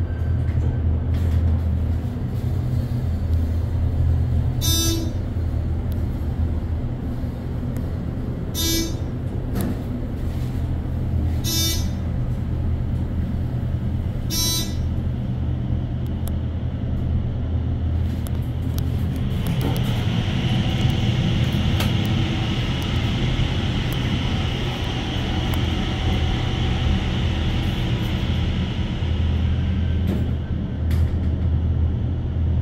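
ThyssenKrupp hydraulic elevator car riding up: a steady low hum throughout, four short high dings a few seconds apart in the first half, and a hiss that joins about two-thirds of the way in.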